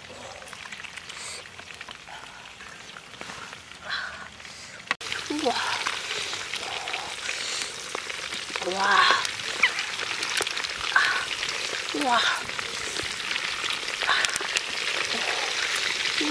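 Softshell turtle pieces with lemongrass and chillies sizzling in a wok over a wood fire, a dense crackling that grows louder about five seconds in.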